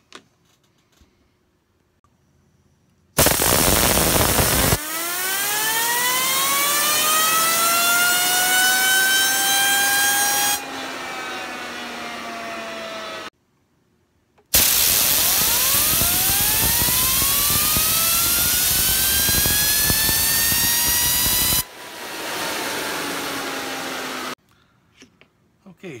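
Compressed air from an air hose blasting a Godspin Poseidon tri-spinner in a test jig, in two runs. Each run is a loud hiss under a whine that climbs in pitch as the spinner speeds up and then levels off. When the air stops, the spinner's whine carries on quieter, sinking slightly as it coasts, until it cuts off suddenly.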